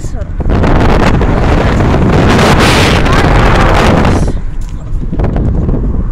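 Wind rushing over a phone's microphone in a moving car: a loud rush that swells for about four seconds and then falls back to the lower rumble of the car.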